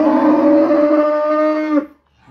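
A cow mooing loudly: one long, steady call that drops in pitch and stops shortly before the end.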